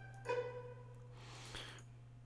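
Sampled violin pizzicato from a Kontakt orchestral library: a single plucked note about a quarter second in, ringing briefly and dying away, over a low steady hum.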